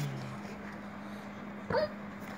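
A toddler's single short, high squeal about a second and a half in, over a steady low hum.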